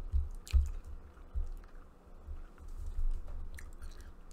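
A person chewing food close to the microphone: faint wet mouth clicks over a run of dull, low thumps.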